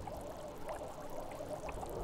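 Faint liquid pouring and trickling in laboratory glassware, with a few small ticks.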